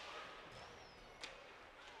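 Faint ice-rink ambience during play, with one short sharp click about a second in.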